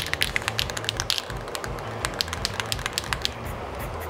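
Aerosol can of Krylon Matte Finish being shaken hard, its mixing ball rattling in quick, uneven clicks that stop a little after three seconds in. The shaking mixes the clear matte sealer before it is sprayed.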